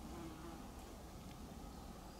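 A flying insect buzzing faintly, briefly near the start, over a low steady rumble.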